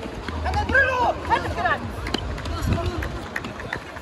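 Futsal players shouting and calling to each other over running footsteps, with short sharp knocks of shoes and ball on the hard court.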